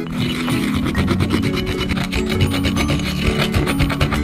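Wooden pestle grinding dry Earl Grey tea leaves in a ridged mortar: a fast, gritty rasping scrape, repeated many times a second.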